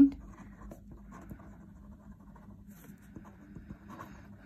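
Blue Dollar Pointer fineliner pen writing on paper: faint, irregular scratching strokes of handwriting.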